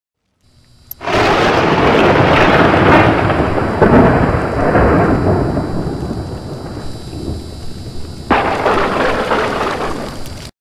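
Thunder sound effect for a logo intro: a loud rumble with a rain-like hiss bursts in about a second in and slowly dies down, then a sharp crack sets off a second rumble a little after eight seconds.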